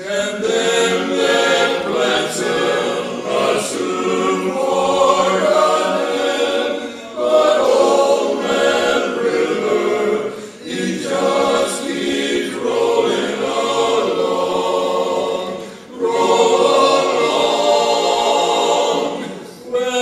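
Men's barbershop chorus singing a cappella in close four-part harmony, in long sustained phrases with short breaks between them.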